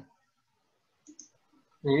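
A faint, quick double click at the computer about a second in, as the code cell is run. Speech starts near the end.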